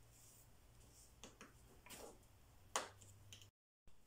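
Near silence: room tone with a faint low hum and a few faint clicks, broken by a brief total dropout near the end.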